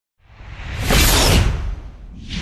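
Logo-intro whoosh sound effect: a noisy swell with a low rumble beneath it, rising out of silence to a peak about a second in and then dying away.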